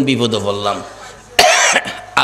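A man coughs once, sharply and loudly, into a close microphone about one and a half seconds in, after a few words of his speech.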